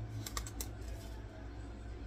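Sublimation paper and heat-resistant tape being peeled off a heat-pressed sock: a quick run of about five sharp crackles in the first half-second or so, then quieter handling.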